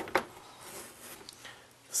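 Chalk on a chalkboard as lines are drawn: two short taps right at the start, then faint scratching strokes.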